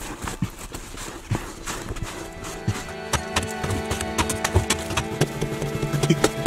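Instrumental background music over irregular knocks of a hand tool striking into hard earth as a hole is dug.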